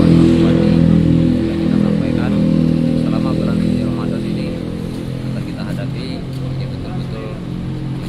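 A motor vehicle's engine running steadily close by, growing gradually fainter over several seconds, with faint voices in the background.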